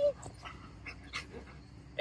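Goldendoodle whimpering: a steady whine that ends just after the start, followed by a few faint short sounds.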